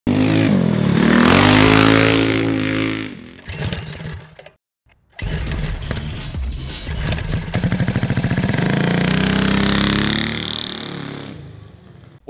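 Go-kart engine running loud as the kart drives past, its pitch dipping and then climbing before it cuts off after about three seconds. After a brief gap, an intro sound of engine revving mixed with music swells and fades out near the end.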